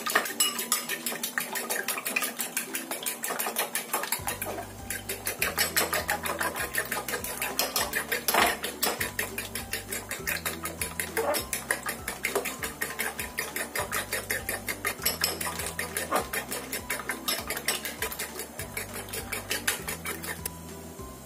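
Eggs being beaten in a bowl: a utensil beating rapidly against the bowl in a fast, steady clicking that goes on throughout. Background music with a bass line comes in about four seconds in.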